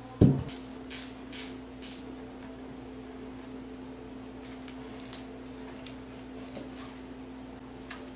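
Hand handling noise on the zip-tied pickup wire and plastic housing of a generator's engine bay: a low thump just after the start, then four short, sharp clicks about half a second apart, over a steady low hum.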